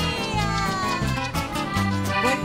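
Live huaycheño (Andean huayño-style) dance music from a band: a pulsing bass line and steady percussion beat under a high melody that slides downward in pitch.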